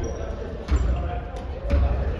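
A volleyball being hit during practice drills, two sharp smacks about a second apart, echoing in a large gymnasium hall.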